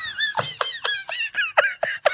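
Men laughing hard: a high-pitched, squeaky laugh that breaks into a quick run of short gasps, each falling in pitch, about five or six a second.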